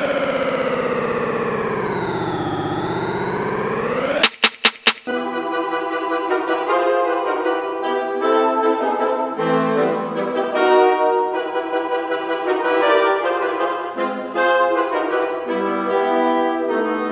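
Electronic music played live on a pad controller: a sustained brass-like note bends down in pitch and back up over about four seconds, cuts into a quick stutter, then gives way to layered brass-like chords with no drums.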